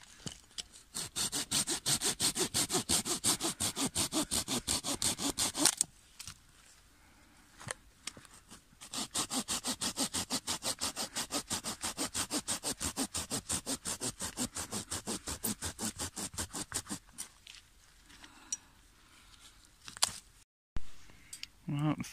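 Hand saw cutting through a log of firewood: fast, even back-and-forth rasping strokes in two long bouts with a pause between them.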